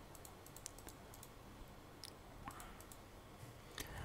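Faint, scattered clicks over near-silent room tone, typical of computer input such as a mouse or keyboard.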